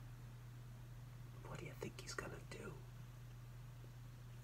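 A man's faint whispering for about a second and a half, starting about a second and a half in, over a steady low electrical hum.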